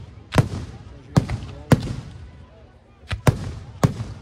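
Aerial firework shells bursting overhead: about six sharp bangs at uneven intervals, two of them close together past the middle, each trailing off in a short rumble.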